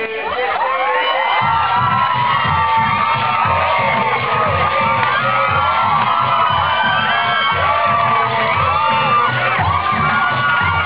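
Audience shouting, whooping and cheering, with many voices overlapping. About a second and a half in, dance music with a pulsing bass beat comes in underneath.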